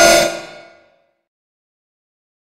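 A metallic, ringing sound-effect hit, many tones ringing together, dying away within about a second into silence.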